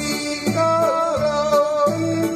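A man singing a Mandarin-Taiwanese pop duet through a microphone and PA over a recorded backing track with guitar, holding long notes with vibrato.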